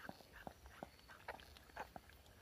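Faint, irregular wet clicks and smacks from a mother dog whelping as a newborn puppy in its birth sac comes out, a few small sounds each second.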